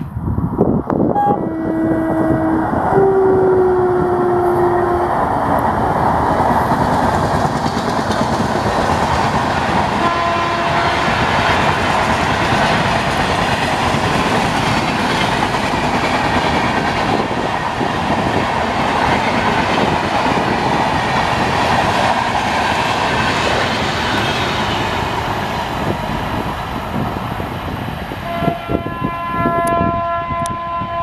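An Indian Railways WAP-4 electric locomotive's horn sounds several short blasts, the last one dipping slightly in pitch. Then a long express train rushes past at high speed, with a steady roar of wheels and coaches for about twenty seconds and one more short horn blast about ten seconds in.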